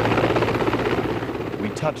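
Helicopter landing close by: rapid rotor-blade chop over a steady engine hum, easing slightly towards the end.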